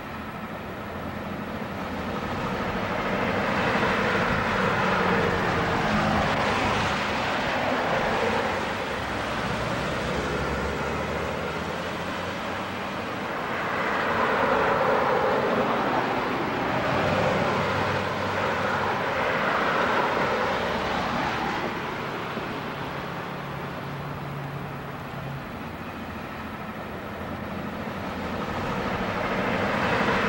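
Passing traffic: a continuous wash of vehicle noise that swells and fades several times as vehicles go by, over a faint steady low hum.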